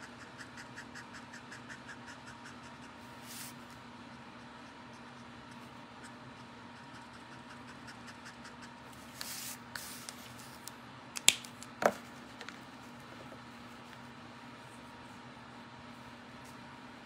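Alcohol marker nib stroking over cardstock in quick, regular strokes, about five a second, that stop after a couple of seconds. Two sharp plastic clicks a little after eleven seconds in are the loudest sounds, under a low steady hum.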